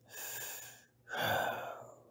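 A man breathing close to the microphone: two breaths, the second louder.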